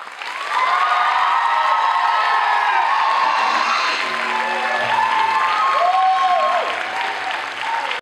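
Audience applauding and cheering after a performance, with sustained vocal whoops over the clapping. The applause swells within the first half-second and holds steady.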